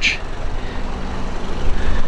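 Steady low background rumble with a faint constant hum, after a brief hiss at the very start.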